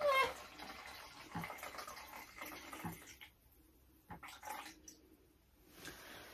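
Faint kitchen handling noises: a few soft knocks as a glass sherry bottle and a measuring jug are moved on the counter, with near-silent pauses between.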